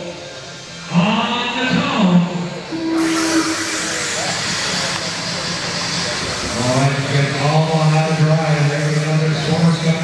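Electric 1/10-scale RC off-road buggies racing on an indoor dirt track. A steady, even hiss of motors and tyres sets in about three seconds in, just after a short steady tone, with indistinct voices over it.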